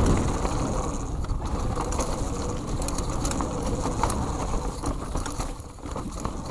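Orange 5 full-suspension mountain bike riding down a dirt forest trail: a steady low rumble from the tyres on dirt, with frequent clicks and rattles from the bike.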